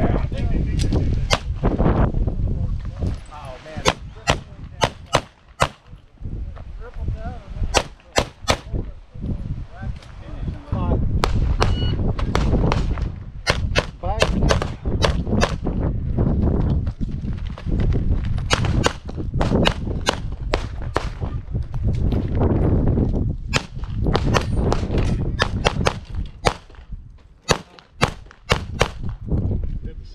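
Dan Wesson PM-9 1911 pistol in 9mm firing in rapid strings, often in quick pairs, with short pauses between strings.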